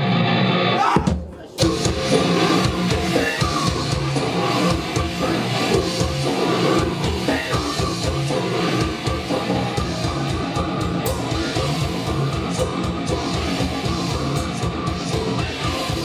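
Live grindcore band with distorted electric guitar and drum kit starting a song. A short burst of noise is followed by a brief break about a second in, then fast, even drumming under guitar.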